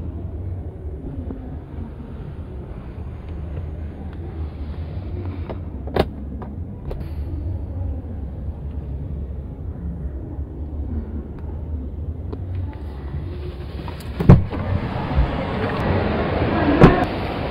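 Exhibition-hall background noise: a steady low hum under a faint haze of distant crowd noise, with a sharp click about six seconds in and a loud knock near the end.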